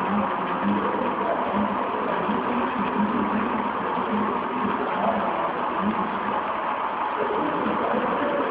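HO-scale model freight train running past close by: a steady running noise of the cars' wheels rolling on the track.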